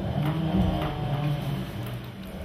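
Sheets of paper rustling and shuffling as they are leafed through and sorted on a table.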